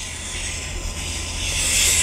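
Chalk drawn along a wooden set square on a chalkboard, ruling a long straight line: a continuous scratching that grows louder toward the end.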